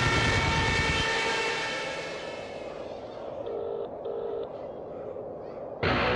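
Sound effects played over a concert PA: a sustained, many-toned drone fades away, then two short electronic beeps sound about half a second apart. Near the end, band music cuts in suddenly and loudly.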